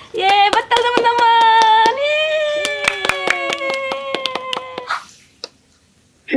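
Rapid hand clapping, about four or five claps a second, under long drawn-out cheering calls from overlapping voices, celebrating a correct guess. Both die away about five seconds in.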